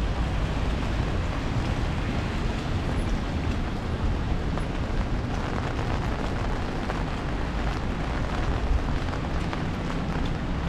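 Steady rain falling on an umbrella held over the microphone, with scattered drop ticks over an even hiss, and a low rumble of traffic and tyres on the wet street.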